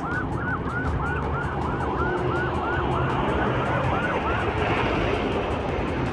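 Ambulance siren sounding a fast yelp, about four rising-and-falling whoops a second over a steady low rumble of traffic; the whoops stop about four and a half seconds in.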